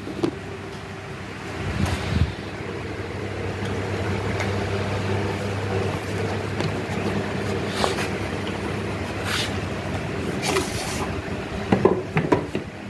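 A cardboard product box being opened and handled: scattered scrapes, rustles and knocks, with a cluster of louder ones near the end, over a steady low hum.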